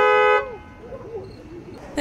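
Police patrol car's horn held in one steady two-note honk that cuts off abruptly less than half a second in, sounded by a child at the wheel.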